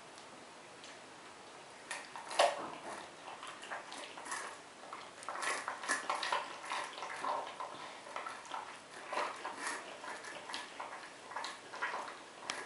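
Brown bear cub eating from a metal bowl: irregular wet lapping and smacking with short clicks of the bowl. It starts about two seconds in, with one sharp click just after that as the loudest sound.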